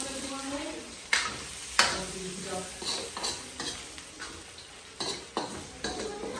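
Chicken frying in a kadai over a gas flame, with a steady sizzle, while a spatula stirs it and knocks and scrapes against the pan. The two loudest knocks come a little after one second and just before two seconds in, and lighter ones follow.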